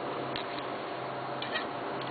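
A few faint metallic clicks as pliers grip and twist a plug-welded sheet-metal coupon held in a bench vise, once about a third of a second in and a couple near one and a half seconds. They sit over a steady background hum.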